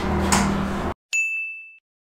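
A single bright bell-like ding sound effect, one high clear tone with a sharp strike that rings out and fades within under a second, set between stretches of dead silence.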